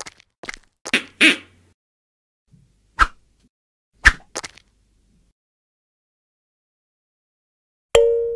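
Cartoon sound effects: a few short swishing thuds in the first second and a half, then a sharp whack at about three seconds and another at about four, followed by two small ticks.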